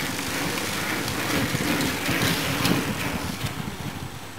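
A group of racing bicycles passing close by on a wet road: tyre hiss and drivetrain whir that swells through the middle and drops off near the end.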